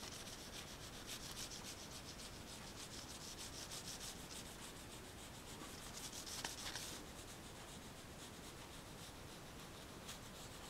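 Oil pastel rubbed on paper in quick, short back-and-forth strokes, a faint dry scratching. The strokes run densely, with one louder scrape about six and a half seconds in, then grow quieter from about seven seconds on.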